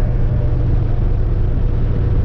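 Steady low drone of a vehicle's engine and road noise heard from inside the cab while driving.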